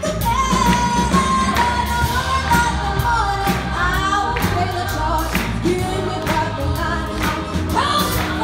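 Live band playing an upbeat song with sung vocals over a steady drum-kit beat, electric guitar and bass.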